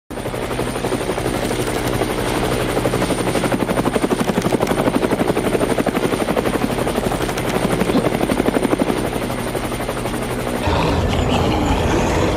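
Helicopter rotor blades chopping in a fast, even rhythm. About eleven seconds in, the sound changes to a lower, steadier rumble.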